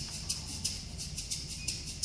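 A shaker in a concert band's percussion section playing a steady, fast samba rhythm of about six strokes a second, alone while the winds rest.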